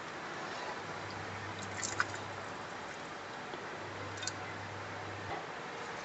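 Quiet kitchen room tone with a low steady hum, and a few faint clicks of a metal ladle touching a wok as soup is scooped, the clearest about two seconds in.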